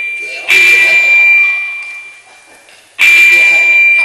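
Two loud vocal bursts into a handheld stage microphone, about half a second in and at three seconds, each carrying a steady high ring of PA feedback that fades over about a second and a half.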